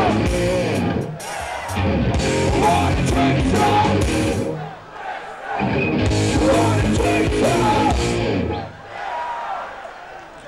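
Thrash metal band playing live: distorted electric guitars, bass and drums with vocals, loud and dense. The music stops short about a second in and again for about a second near the middle, and drops away near the end.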